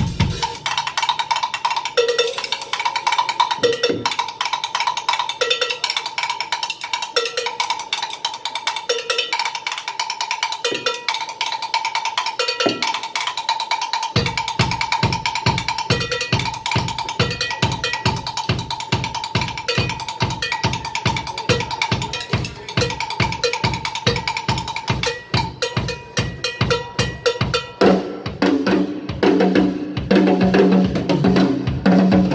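Drum kit played solo, live: fast, dense strokes throughout, with a ringing bell-like hit repeating about once a second. The bass drum comes in about halfway through, and lower tom hits join near the end.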